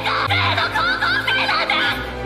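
Anime soundtrack: a tearful voice speaking emotionally in a high, wavering pitch over background music with steady held low notes.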